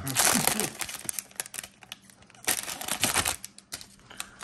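Foil trading-card pack being torn and crinkled open, then a run of sharp clicks and crackles as the cards are pulled out and handled. A short laugh at the start.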